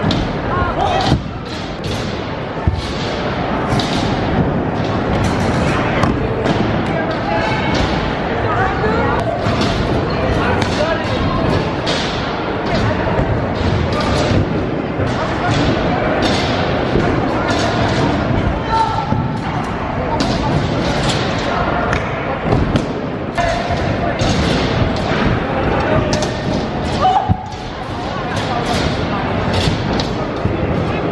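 Skate-park sounds: a constant babble of voices, with frequent sharp thuds and slams as scooters land on and hit the wooden ramps.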